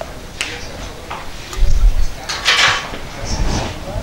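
Handling noise on a clip-on lapel microphone as a person moves into position: two low thumps and short bursts of clothing rustle.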